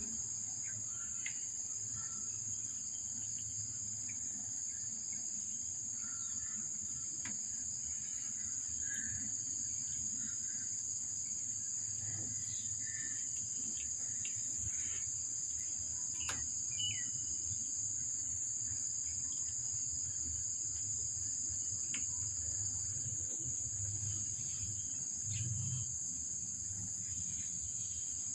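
Steady high-pitched drone of insects, unbroken throughout, over a faint low rumble with a few soft clicks.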